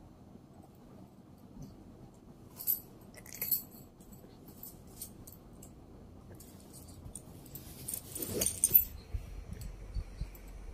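Light metallic clinks and jingles from a small object a toddler is handling: two sharp clinks about three seconds in, scattered faint ticks after. Near the end comes a louder burst of rustling and knocks.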